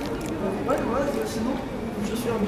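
Indistinct voices of people talking in the background, with no clear words.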